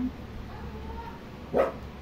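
A dog barks once, short and sharp, about one and a half seconds in.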